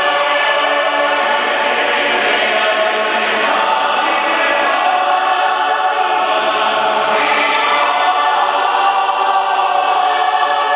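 A choir singing a gospel song in many-voiced harmony. The singing is steady and full throughout, with long held chords.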